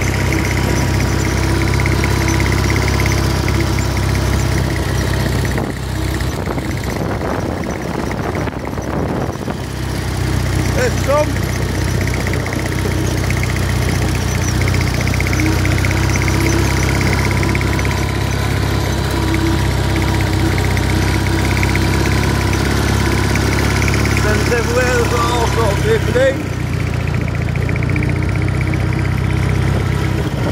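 The engine of the open vehicle being ridden across grass, running steadily under way as a continuous low drone. A few short pitched voice-like sounds come in about 11 seconds in and again around 25 seconds.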